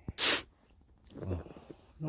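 A person sneezing once: a single short, sharp burst just after the start.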